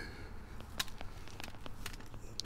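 Faint handling noise: a few light clicks and rustles as hands work around the thin stem of a potted apple tree.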